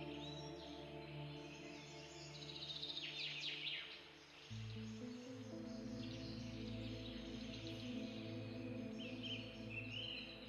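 Soft ambient background music of sustained chords that shift to a new chord about halfway through, with bird chirps and trills above it.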